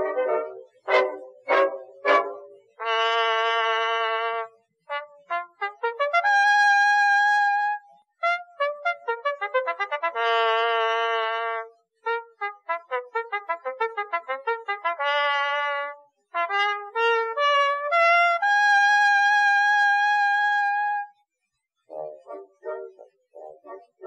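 Music: a solo trumpet-like brass melody, quick runs of short notes alternating with long held notes, broken by a few brief silences between phrases.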